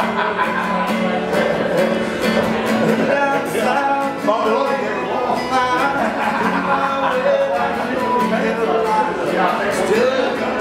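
Steel-string acoustic guitar, capoed, strummed in a steady country rhythm, with a man singing along.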